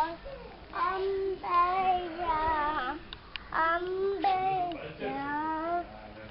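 A child singing a melody in short phrases of held, wavering notes.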